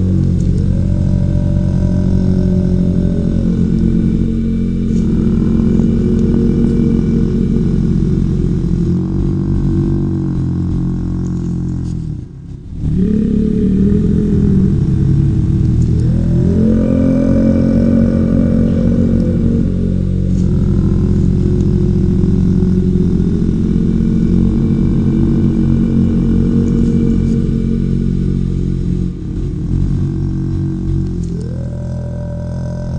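Deep droning meditation music of layered low tones with slow upward pitch slides, the pattern repeating about every sixteen seconds. It cuts out briefly about twelve seconds in.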